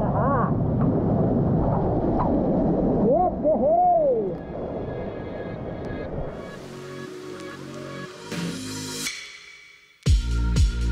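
Steady rush of a waterfall close by, with a man's voice calling out briefly a few times about three to four seconds in. The water sound fades after about five seconds, music comes in underneath, and the music dies away just before the end.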